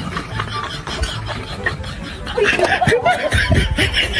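Laughter, giggling in short bursts, starting about halfway through, over background music.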